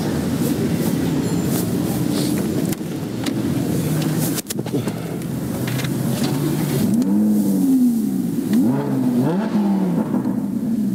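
Lamborghini Huracán's V10 engine running, then revved several times in the last few seconds, its pitch rising and falling with each blip of the throttle.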